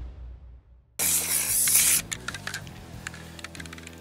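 An aerosol can of spray paint sprays for about a second, a steady hiss that starts and stops abruptly, freshening the paint on a steel target, over background music. A fading tail of an earlier sound comes before it.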